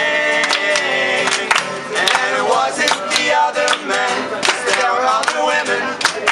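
Live rock band playing a song: guitar and a steady beat of hits about twice a second under a male voice singing long held notes.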